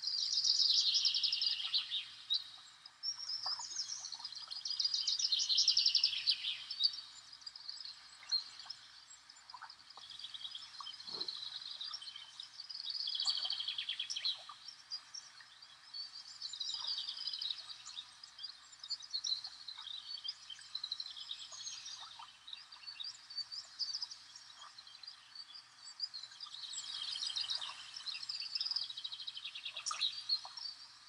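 Small songbirds singing in the surrounding forest: rapid high trilled phrases, each lasting a second or a few, repeated about every four seconds.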